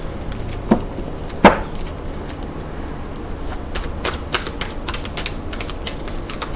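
Tarot cards being shuffled and handled, heard as a scatter of light clicks and flicks. Two sharper snaps come in the first second and a half, and a quicker run of small clicks follows in the second half, over a low steady hum.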